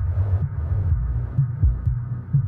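House music in a DJ mix: the hi-hats and treble fall away about half a second in, leaving a muffled, thumping kick drum and bassline at roughly two beats a second.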